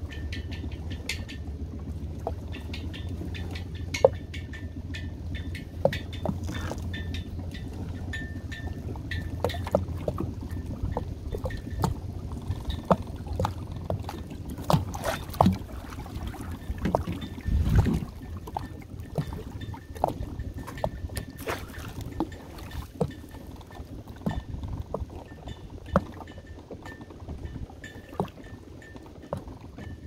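Trotline gear being worked at the side of a small boat: the line and anchor chain run over a roller line puller with repeated clicks and clinks, and water splashes and drips. A steady low rumble sits underneath, and there is a single louder low thump near the middle.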